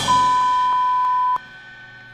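A single steady high-pitched beep lasting just over a second, cut off sharply, over the fading end of a radio jingle. It is the station's time-check tone.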